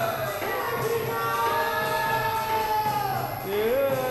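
Hindu devotional song (pad gaan) being sung: voices hold long notes that slide downward, over instrumental accompaniment.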